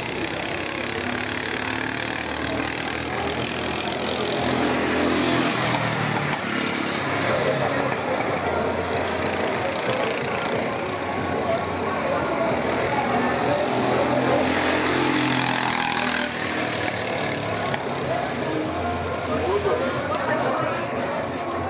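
Go-kart engines running at a kart track, mixed with indistinct background voices, swelling louder at times.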